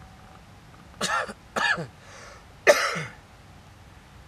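A man coughing three times in harsh bursts, each dropping in pitch, the last the loudest.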